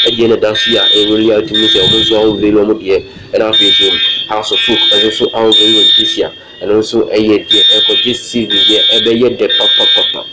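A person's voice talking over short high-pitched electronic beeps, like an alarm, each under half a second, recurring irregularly throughout.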